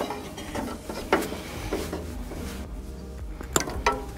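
A few sharp metallic clicks and snips from a hand tool working on an electrical cord, spaced a second or two apart.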